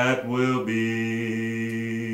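A man singing a slow gospel song in a low voice. He slides briefly between notes, then holds one long, steady note from about half a second in.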